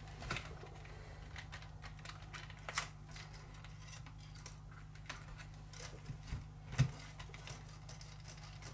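Scattered light clicks and taps of a 1/12-scale RC truck's plastic body shell being handled and pressed onto its chassis, the sharpest tap near the end, over a steady low hum.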